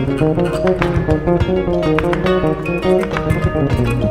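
Malian instrumental band music: a plucked ngoni melody over bass guitar and percussion, in a busy, steady rhythm.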